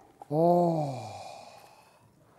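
A woman's drawn-out, sigh-like 'ooh' of delight, falling in pitch over about a second and trailing off.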